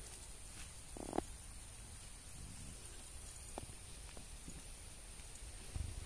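Faint low rumble with a few soft ticks and a light thump near the end: handling noise and footsteps of someone moving through thick ground vegetation with a handheld camera.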